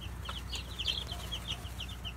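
A brood of baby chicks peeping, many short high chirps coming fast and overlapping. They are peeping in alarm at being disturbed.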